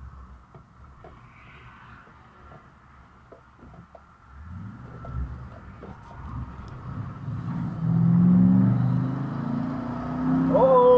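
Car engine heard from inside the cabin, quiet at first, then pulling away under acceleration. A low engine note builds and grows louder through the second half.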